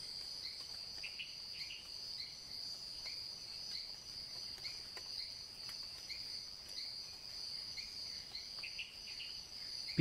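Insects trilling: a steady, high-pitched cricket-like chorus, with a shorter, lower chirp repeating every second or so.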